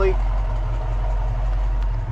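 Ford 289 four-barrel V8 idling steadily through a Magnaflow dual exhaust: a low, even rumble.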